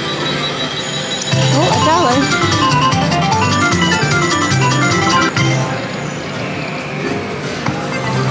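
Kitty Glitter video slot machine playing its electronic game music and cascades of chiming notes as the reels spin and pay out a small win.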